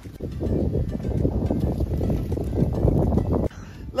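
Wind buffeting the camera's microphone on an exposed ridge: a rough, gusting rumble that cuts off suddenly near the end.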